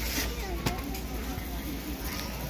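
A cardboard cereal box handled and lifted off a store shelf, with one sharp knock about two-thirds of a second in. Faint voices of other shoppers and a steady low hum run underneath.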